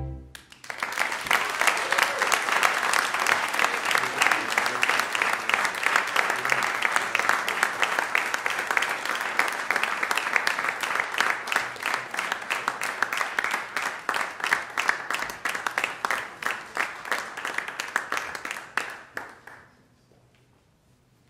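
The last chord of a string ensemble cuts off at the very start, then an audience applauds for nearly twenty seconds, the clapping thinning out and stopping just before the end.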